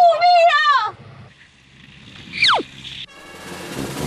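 A short spoken exclamation, then a quick falling whistle, a comedy sound effect dropping steeply in pitch, about two and a half seconds in. A rushing whoosh swells near the end.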